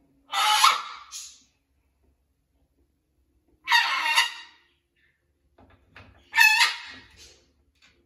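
Macaw squawking: three loud calls, each about a second long, about three seconds apart.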